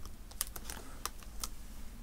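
Several light, sharp clicks and taps of plastic and metal as hands handle a laptop display panel and its cable connector.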